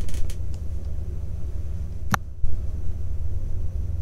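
Steady low hum and faint hiss of open microphones on a video call, with a single sharp click about two seconds in.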